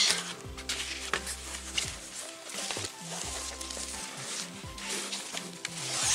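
Background music with low held bass notes that change every second or so, under the rustling and small knocks of a fabric tote bag being unfolded and handled.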